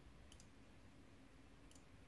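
Near silence with a few faint clicks: a quick pair about a third of a second in and a single one near the end.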